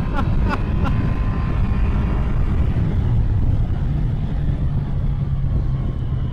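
Yamaha FJR1300 ES's 1300cc inline-four, fitted with a Two Brothers exhaust, cruising at a steady highway speed, its engine drone mixed with wind and road rumble; the engine note holds steady from about halfway through.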